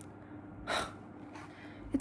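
A young woman's short, audible breath, a single breathy puff lasting about a third of a second, not long into the pause, over a faint steady hum.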